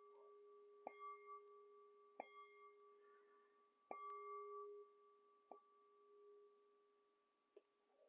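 A handheld metal singing bowl struck softly with a mallet four times, about every one and a half seconds. It rings with a low hum and a higher overtone that swell after each strike, then fades out near the end.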